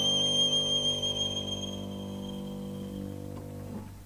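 Violin solo ending on a long held high note over a sustained low accompaniment chord. The high note dies away about two seconds in while the chord lingers more quietly, fading until the recording ends.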